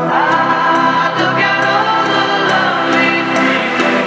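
Progressive trance music: held choir-like vocal chords over sustained synth layers, with a short sound gliding upward in pitch at the very start.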